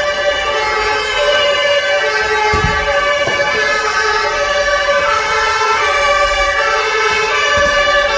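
Emergency vehicle sirens sounding continuously, their steady tones stepping between pitches, with more than one siren overlapping.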